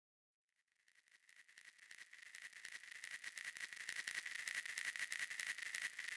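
Faint crackling noise, dense irregular clicks over a steady high whine, fading in from silence about a second in and growing steadily louder.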